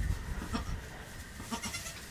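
Goats faintly bleating in the pen, a couple of short soft calls, over a low wind rumble on the microphone.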